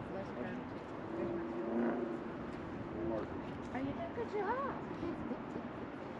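Indistinct voices of people talking over a steady outdoor background noise.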